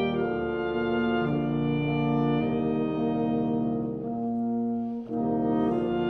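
Wind nonet of flute, two oboes, two clarinets, two horns and two bassoons playing slow, sustained chords that change every second or so, with a brief break about five seconds in before the next chord.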